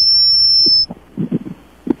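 Steady high-pitched electronic whine on the broadcast audio, interference on the line that is loud enough to hurt the ears. It cuts off suddenly just under a second in.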